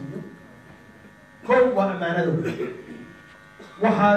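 A steady electrical buzz runs throughout, under a man's voice that speaks for about a second and a half in the middle.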